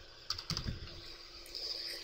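Computer keyboard keys being typed, a few separate keystrokes in the first second.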